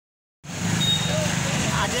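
Street traffic with a motor vehicle engine running close by and people's voices. It cuts in abruptly a moment after the start.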